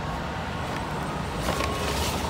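Steady outdoor background noise with a low rumble like distant traffic, and a faint brief sound about one and a half seconds in.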